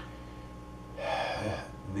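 A man's audible in-breath through the mouth about a second in, a short airy hiss drawn before speaking, over a faint steady room hum.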